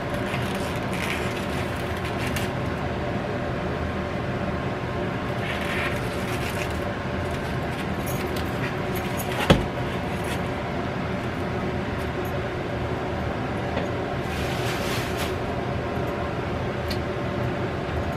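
A steady mechanical hum runs throughout. Plastic meat wrap crinkles in a few short bursts as a package of ground beef is pulled open, and there is one sharp click about halfway through.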